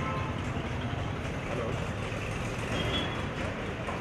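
Steady street traffic noise: a low, even rumble of vehicles.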